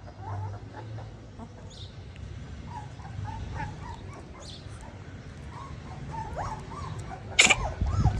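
A young puppy whimpering, with short faint squeaks scattered through the middle, then a sudden louder sound near the end.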